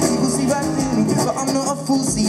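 Live acoustic song: an acoustic guitar strummed steadily under a man's voice delivering a fast, rap-like vocal line.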